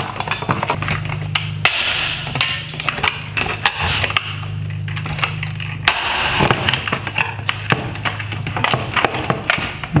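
Flathead screwdriver prying and scraping at the plastic clips and metal mounting brackets inside a Tesla Model 3 headlight housing: a run of sharp clicks, taps and scrapes. Under it runs a steady low hum.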